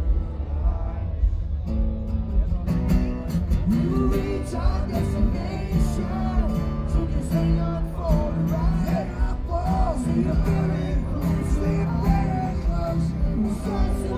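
Live acoustic band playing: two acoustic guitars strummed together with a cello, and a male lead vocal that starts singing about three seconds in.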